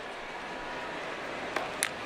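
Steady crowd noise from a football stadium, with two brief sharp sounds near the end.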